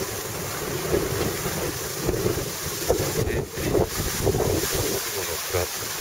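Wind rushing over the microphone while sliding down a snow slope, with the hiss and scrape of snow under the rider's feet, rising and falling in uneven surges.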